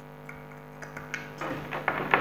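Small clicks and taps of a plastic bulb socket and its cord being handled, as a repaired LED bulb is fitted into the socket. A faint steady hum runs underneath.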